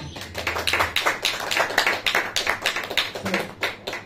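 A small audience applauding: many distinct, irregular hand claps as the last guitar chord dies away in the first second.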